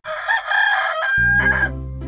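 Domestic rooster crowing once, a cock-a-doodle-doo ending on a long held note. Low steady background tones come in just over a second in.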